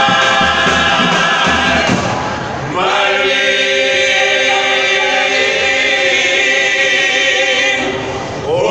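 A male murga vocal group singing in close harmony. About two and a half seconds in the voices drop off briefly, then come back on a long held chord.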